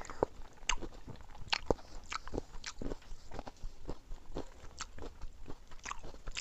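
Close-up eating sounds of two people chewing soft milk rice pudding (sangom kher): wet mouth clicks and lip smacks, irregular, about two a second.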